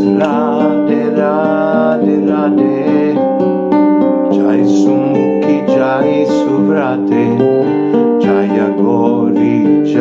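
A man singing a slow devotional song with vibrato, accompanying himself on an acoustic guitar.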